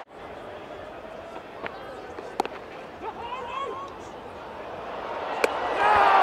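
Cricket-ground crowd murmur with a few sharp knocks, the clearest about two and a half seconds in and near the end, and faint distant calls. The crowd noise rises over the last couple of seconds as a run-out unfolds.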